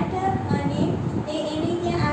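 Only speech: a woman talking in a lively, sing-song teaching voice.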